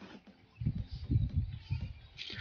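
Low, irregular rumble of wind buffeting a phone microphone, starting about half a second in.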